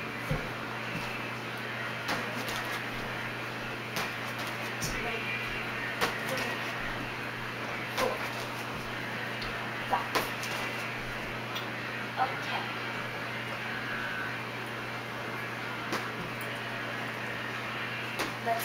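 Feet of a child jumping on and off a low padded exercise step: short, sharp thumps and landings roughly every two seconds, over a steady low hum.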